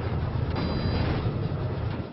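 Steady low roar of a large jet aircraft in flight through a storm, engine and rushing-air noise blended together.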